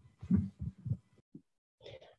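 A few faint, short low voice sounds over a video call in the first second, then a pause, and a brief soft noise near the end.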